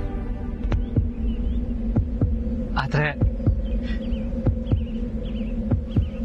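Background score: a steady held drone under a soft thumping beat that throbs like a heartbeat, about four beats a second, with a few brief wavy melodic flourishes in the middle.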